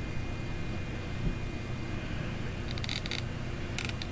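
Steady low room hum with a faint high whine, broken by a soft thump about a second in and two short runs of faint rapid clicking in the second half.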